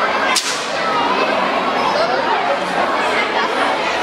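Many voices chattering at once in a large hall, adults and children. One sharp crack cuts through them less than half a second in.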